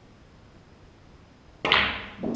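Snooker cue tip striking the cue ball, which at once cracks into a red ball, giving one sharp click with a short ringing tail about one and a half seconds in; before it, only quiet room noise.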